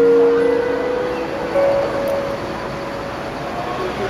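Solo acoustic guitar in a pause between sung lines: a few single notes ring out and fade one after another, the strongest in the first second, over a steady background hiss.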